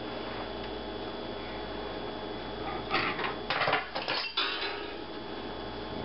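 A metal fork dropped and clattering against cookware, a quick cluster of sharp strikes about halfway through, over a steady background hum.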